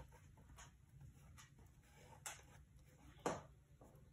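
Faint paper rustles as fingers press and smooth a torn paper strip onto a journal page, with a few brief scratchy sounds, the loudest about three seconds in.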